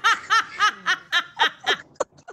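A person laughing in a run of high-pitched 'ha' bursts, about three or four a second, trailing off toward the end.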